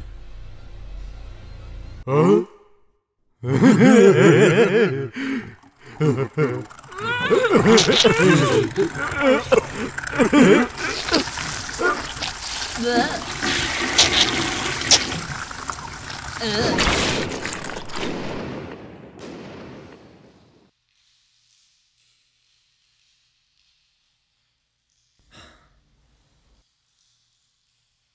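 A cartoon monster's drawn-out cries and wails over a wet, gushing noise, loudest in the middle and dying away about twenty seconds in, followed by near silence with one brief sound near the end.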